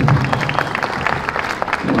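Audience applause, a dense patter of claps, with background music underneath, in a pause between thank-yous on stage; speech resumes near the end.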